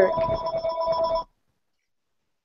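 A steady electronic tone sounding two pitches at once, like a telephone ring, that cuts off suddenly a little past a second in. The audio then drops to dead silence.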